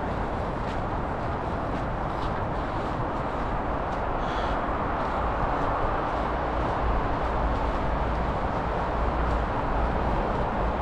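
Steady rush of distant road traffic, with low wind rumble on the microphone that grows stronger about halfway through, and a brief faint high-pitched sound about four seconds in.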